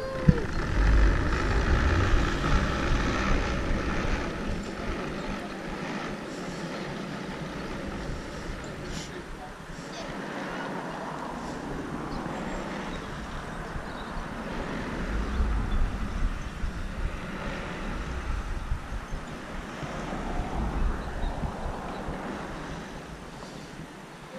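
Steady rumbling hum of a suspended skateboard obstacle rolling along a steel cable, with a heavy low surge just as it sets off and two more low surges later on.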